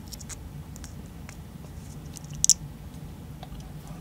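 Diagonal cutters snipping through the nickel strip that joins a lithium-ion cell to a power-bank circuit board: one short, sharp snip about two and a half seconds in, among faint handling clicks.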